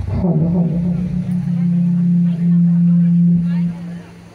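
A person's voice holding one long, steady, low note for about three and a half seconds, settling slightly lower in pitch at the start and cutting off near the end.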